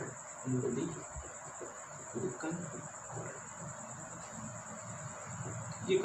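A continuous high-pitched insect trill, pulsing evenly and without a break.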